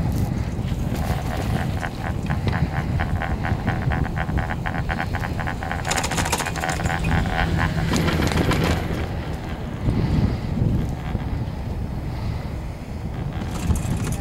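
Ride on a Garaventa CTEC high-speed quad chairlift: wind rumbling on the microphone, with a rapid, evenly spaced clicking and clatter for several seconds in the middle as the chair runs past a lift tower and the haul rope rolls over its sheave wheels.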